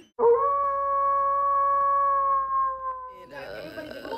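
A person's voice holding one long, high sung note for about three seconds, steady in pitch and sagging slightly as it ends. Voices talking follow near the end.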